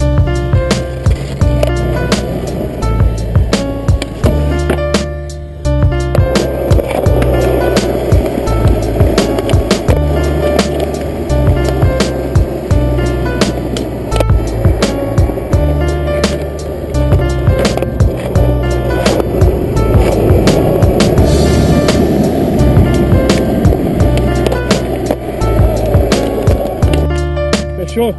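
Music with a steady beat and a repeating bass line, over the rumble of skateboard wheels rolling on asphalt from about six seconds in.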